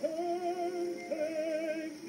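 Music: a slow melody of long held notes with vibrato, each note changing about once a second.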